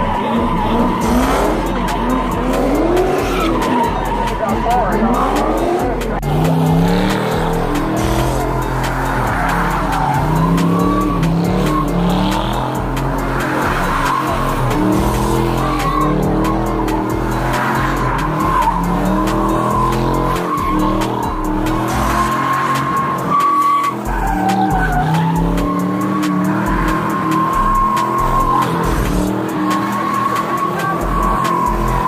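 V8 cars doing burnouts and donuts: the rear tyres squeal in a long, steady high screech while the engine revs rise and fall as the driver works the throttle.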